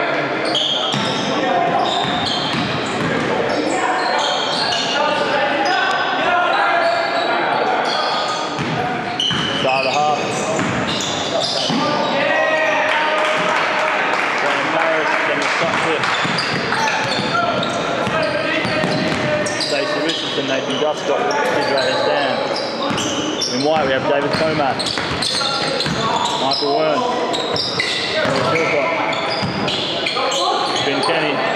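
Sounds of a basketball game on a hardwood court in a large echoing gym: the ball bouncing as it is dribbled, with indistinct voices of players and onlookers calling out throughout.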